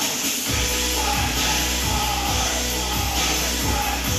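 Music with a steady beat; a deep bass line comes in about half a second in.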